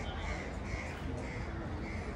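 Crows cawing in a steady series, about two short calls a second, over a low steady rumble.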